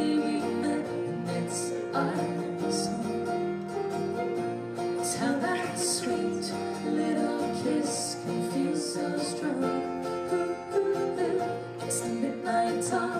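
Live acoustic song: an acoustic guitar strummed, with a woman singing.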